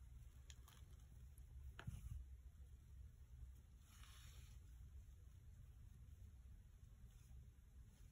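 Near silence: faint handling of paper and ribbon, with two light taps in the first two seconds and a brief soft rustle about four seconds in, over a low steady hum.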